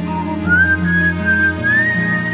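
Instrumental break of a slow pop ballad: a high, thin lead melody rising in short glides, starting about half a second in, over sustained soft chords.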